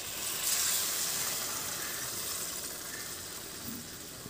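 Water poured into a hot wok of fried rohu fish pieces and masala, hissing and sizzling as it hits the oil, loudest in the first second or so and then settling to a steady sizzle.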